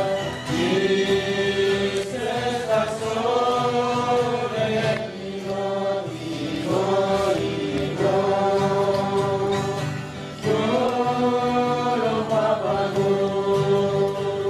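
Slow, chant-like sung melody in long held phrases over a low steady accompaniment. The singing pauses briefly about ten seconds in, then resumes.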